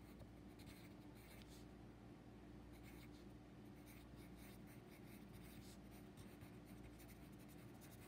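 Faint scratching of a wooden pencil writing on a paper workbook page, steady strokes of handwriting, over a low steady room hum.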